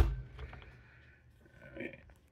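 A single sharp click, then faint handling noise that fades to near quiet, with a small soft knock near the end.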